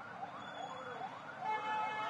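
A faint siren wailing in quick rising-and-falling cycles, about three or four a second, over street noise. A brief steady tone joins it about a second and a half in.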